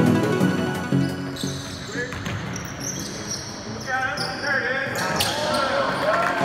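Electronic background music for about a second. Then it falls back and the live gym sound of a basketball game comes through: a basketball bouncing on the hardwood court, sneakers squeaking, and players' voices.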